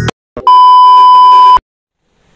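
A single loud electronic beep: one steady high-pitched tone, like a censor bleep, lasting about a second and cutting off suddenly, with silence around it.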